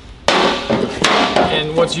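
Packaging being handled while a plasma cutter torch lead comes out of its box: a sudden knock about a quarter second in, then about a second of rustling that tails off.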